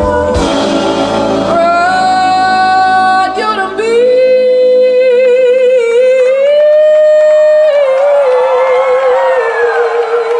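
Live band music with a female lead singer, amplified through a PA. The full band's bass and drums fall away about half a second in, and the voice goes on holding long notes with vibrato over light accompaniment, the last one held from about four seconds in to the end.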